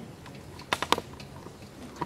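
A handful of sharp clicks and taps over a low background, with a quick cluster of about four close together just under a second in.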